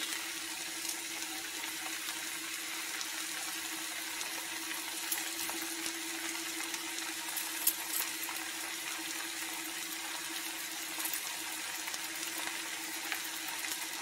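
Noodles and vegetables sizzling steadily in a frying pan as a sauce slurry is poured in and scraped from the bowl with a spatula, with a few light clicks about five and eight seconds in. A low steady hum runs underneath.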